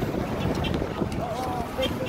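Wind buffeting a phone's microphone with a steady low rumble, and faint voices of people in the street in the second half.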